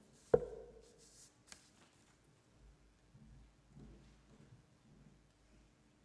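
A single sharp thump on the wooden lectern, picked up close by its microphone about a third of a second in, with a brief ringing tail. It is followed by faint rustling and a couple of small clicks as the lectern is left, over a faint steady hum of the sound system.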